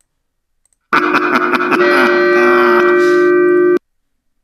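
A bell sound in the prop's audio track, played back from the computer: it strikes suddenly about a second in and rings with several sustained tones. It cuts off abruptly near the end when playback is stopped.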